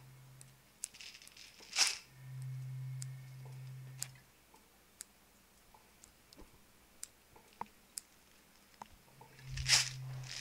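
Handling noises: scattered light clicks and a brief rustle about two seconds in, with a louder rustle near the end. A low steady hum comes in for a couple of seconds after the first rustle and returns near the end.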